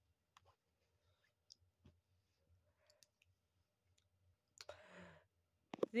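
Faint handling of a paperback picture book as it is closed and laid down: a few small, soft clicks and taps, then a short breath near the end.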